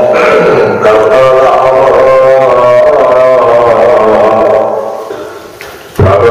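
Sikh devotional hymn singing (kirtan): a sung melody over a steady droning accompaniment, fading down near the end and coming back in loudly.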